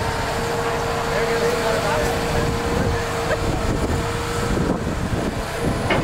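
Caterpillar hydraulic excavator's diesel engine running as the boom lifts the bucket. A steady whine over the engine rumble stops about four and a half seconds in.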